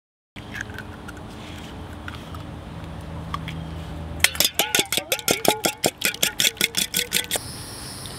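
Eggs being beaten in a stainless steel mixing bowl: a quick, even run of metal clinks, about six a second, with the bowl ringing on each stroke, starting about four seconds in and stopping about three seconds later.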